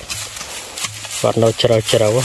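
A hoe scraping and chopping into dry soil among dry leaves, with the leaves rustling and crackling and a few short knocks.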